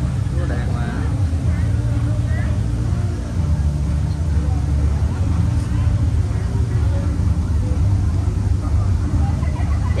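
Faint voices of people talking some way off, over a steady low rumble.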